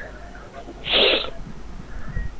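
A single short, loud breathy burst from a person, about a second in and lasting about half a second.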